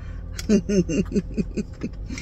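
A woman laughing: a quick run of about eight short "ha" syllables, each falling in pitch, starting about half a second in, over the low steady hum of a car cabin.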